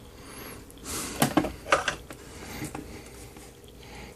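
Light handling noise as a soldering iron and solder wire are picked up and brought to the work: a few soft clicks and rustles, the sharpest just over a second in.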